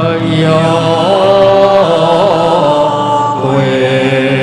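Buddhist devotional chant sung with musical accompaniment: long held notes that step from one pitch to the next, with a brief wavering ornament partway through.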